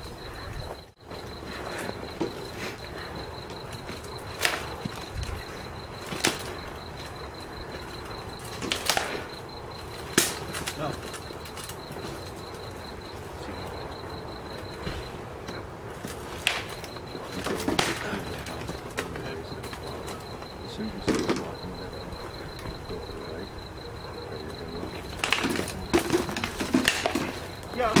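Armoured sparring: sword blows landing on shields and armour as sharp knocks at irregular intervals, a few seconds apart, with a quick flurry of hits near the end.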